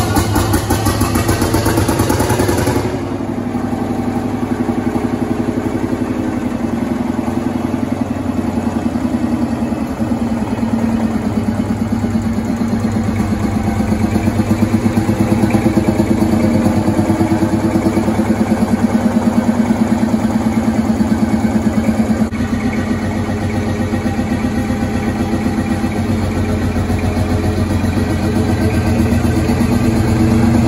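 Field Marshall Series 1 tractor's single-cylinder two-stroke diesel engine running at idle just after starting, a steady rapid beat. A hiss rides over it for the first three seconds, then it settles to even running.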